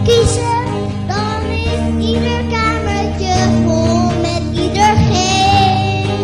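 A song: a high voice sings a melody over steady held backing chords.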